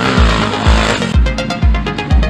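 Electronic dance music with a steady kick drum about twice a second, and a swelling noise sweep over the first second.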